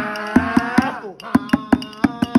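A voice holds a long drawn-out note over a steady drum beat, sliding down and breaking off about a second in, while the beat carries on.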